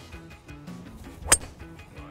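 A single sharp crack about a second and a half in, as a Ping G425 LST three wood strikes a golf ball cleanly, with a short high ring. Background music plays underneath.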